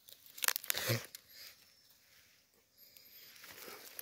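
Crackling and rustling of leaf litter and undergrowth as a parasol mushroom is picked by hand. The sharp crackles come mostly in the first second, then it goes quieter.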